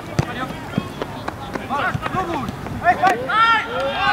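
Excited shouting from players and spectators on a football pitch, building up and growing louder and higher from about three seconds in as an attack goes toward goal, with a few sharp knocks over it.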